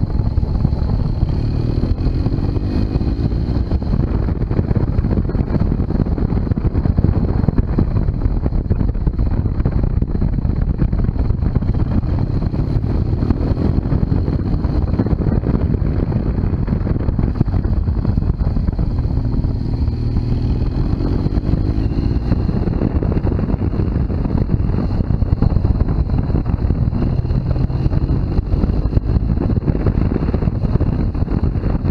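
2004 BMW R1200GS flat-twin engine running under way, heard from on the bike, its pitch rising and falling a few times as the revs change through the bends. Road and wind noise fill in underneath.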